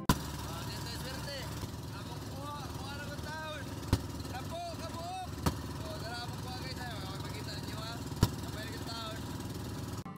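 Engine of a small outrigger fishing boat running steadily under way at sea, with a few sharp knocks: one at the start, then about 4, 5.5 and 8 seconds in.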